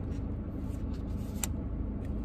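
Steady low hum of a car's cabin, with one faint sharp click about one and a half seconds in.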